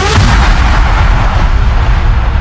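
Electro house music hitting its drop: a rising synth sweep ends in a sudden crash-like impact over heavy bass. A wash of noise dies away over the next two seconds while the bass keeps pounding.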